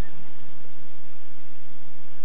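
Steady hiss of background noise with no distinct event in it.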